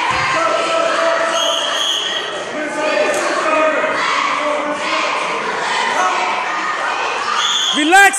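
Crowd of voices chattering and calling out, echoing in a large gym, with a basketball bouncing on the floor. Near the end, quick squeaks start up, as of sneakers on the court when play resumes.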